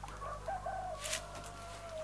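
A rooster crowing in one long call that starts about half a second in and falls slightly in pitch at its end, with a short rustle about a second in.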